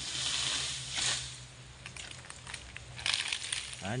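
Rustling and crackling of oil palm fronds at the crown as a long-pole harvesting sickle (egrek) is pulled through them. There is one bout lasting about a second, then a second, crackly bout about three seconds in.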